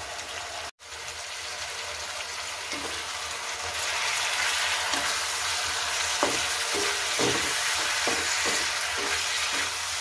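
Star fruit (kamrak) pieces sizzling in oil in a non-stick pan. The steady sizzle swells over the first few seconds after the lid comes off, breaks off for an instant just under a second in, and carries a few light taps of a spatula stirring the pan.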